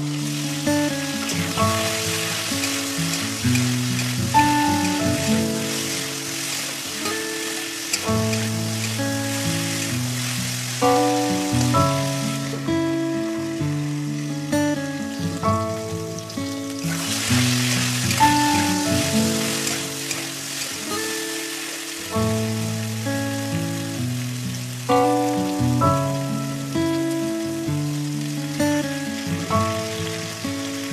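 Cauliflower and potato pieces sizzling as they fry in oil in a kadai, under instrumental background music of steady held notes. The sizzle drops away for about four seconds midway, then returns.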